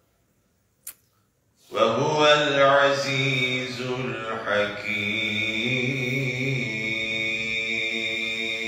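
A man's voice chanting a long, melodic religious recitation into a microphone, with drawn-out held notes and slow melismatic turns. It begins after a second and a half of silence broken by one short click.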